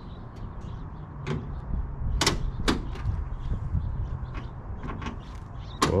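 A car hood being lowered and pressed shut, with two sharp latch clicks about half a second apart a little over two seconds in, and a few lighter knocks. A steady low rumble runs underneath.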